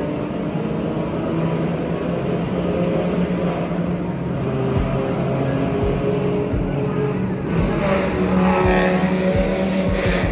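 2019 Dodge Charger R/T's 5.7-litre HEMI V8 exhaust, heard from inside the cabin while cruising through a tunnel, a steady drone with a run of short low pops in the second half, the exhaust 'popcorn'. It gets louder around eight to nine seconds in.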